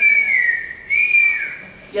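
A person whistling one wavering note, with a short break about halfway through, as a sound effect for wind shaking the leaves in a story told aloud.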